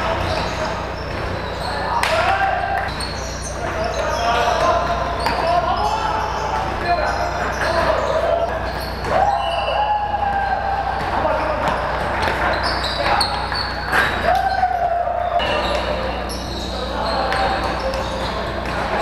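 Live sound of an indoor basketball game: a basketball bouncing on the hardwood court, with scattered short calls and shouts from the players, echoing in the large hall.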